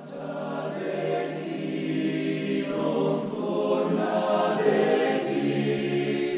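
Background choral music: sustained voices holding long chords, swelling over the first second and then holding steady.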